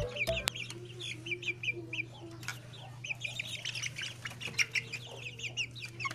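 Barred Plymouth Rock chickens calling in a coop: a run of short, high, falling chirps, with a low drawn-out cluck in the first couple of seconds.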